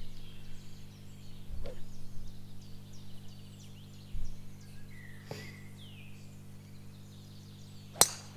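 Birds chirping and singing over a steady low hum, then, at the very end, one sharp crack of a golf club striking a teed-up ball.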